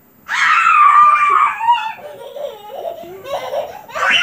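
A young child's high-pitched squeal of laughter, starting about a quarter second in and lasting over a second, then quieter, lower laughing.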